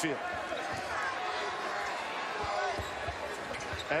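Basketball being dribbled on a hardwood court, with repeated short sneaker squeaks from players cutting, over steady arena crowd noise.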